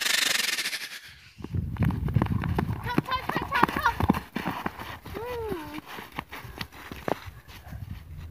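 A short burst of hiss, then children's high voices calling out over a quick, irregular run of clicks and taps.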